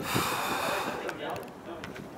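A breathy exhale close to the microphone, a hiss lasting about a second, then faint outdoor background.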